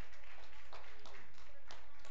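A few scattered hand claps from the congregation, with a steady low electrical hum underneath.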